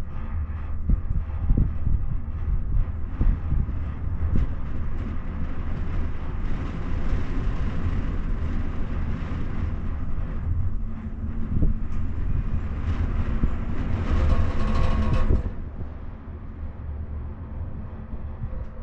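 Enclosed gondola cabin running along its haul rope: a steady low rumble with occasional knocks. About fourteen seconds in it swells into a louder rolling whir as the cabin runs over a lift tower's sheave wheels, then drops off suddenly.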